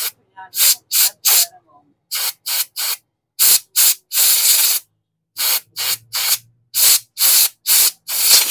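Compressed-air blow gun blasting air through a motorcycle fuel injector to clear it, in a rapid series of short hissing blasts with one longer blast about halfway through.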